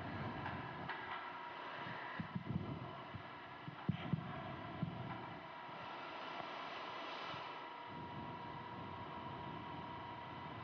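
A steady hum with a low, irregular throbbing underneath, with a few soft thumps about two to five seconds in.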